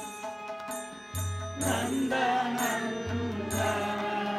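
Devotional chant sung to music: held instrumental notes, with a voice coming in about one and a half seconds in, over a regular low beat.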